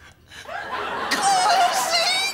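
A man's high-pitched, squeaky stifled giggle. It starts about half a second in and quavers rapidly near the end.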